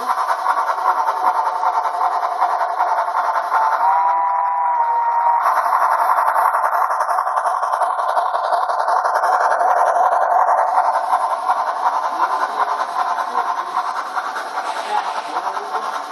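A model train running past on its track: a steady motor whine over a fast, continuous clatter of wheels on the rails, fading near the end as it moves away. About four seconds in, a brief two-note tone sounds over it.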